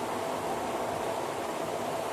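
Steady, even hiss of background noise, with no distinct knocks or tones.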